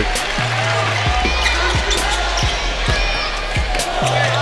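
Basketball being dribbled on a hardwood court, a bounce roughly every second, over the general noise of an arena during play.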